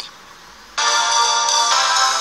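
Radio news jingle: after a short hush, a steady held chord of several tones comes in abruptly about three-quarters of a second in and shifts once about a second later.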